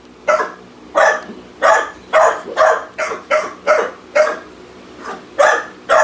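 An American bulldog giving a run of short, breathy barks close to the microphone, about two a second, with a brief pause a little past the middle.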